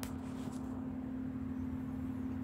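A steady low background hum with a single sharp click at the very start.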